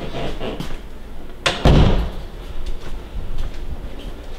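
A door shutting with a thump about one and a half seconds in, among fainter knocks and rustles.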